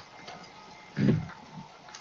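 A single short voice sound about a second in, over the low hiss of an online voice-chat line.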